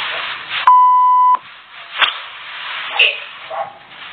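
Censor bleep: one steady, high, pure beep about two-thirds of a second long that cuts in and out abruptly, dubbed over the audio. A couple of short sharp clicks follow.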